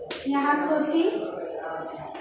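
A woman speaking, her voice drawn out in pitch as if reading aloud slowly.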